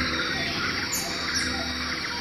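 Two short, very high-pitched falling chirps about half a second apart, over a steady background hiss.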